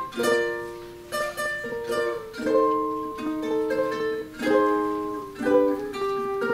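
Solo ukulele played with the fingers: plucked chords and melody notes, each ringing and fading before the next is picked.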